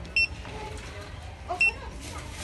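Handheld barcode scanner beeping twice, about a second and a half apart, each short high beep marking a successful read of a DVD's barcode.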